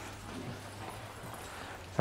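Quiet, steady background noise with a faint low hum and no distinct events.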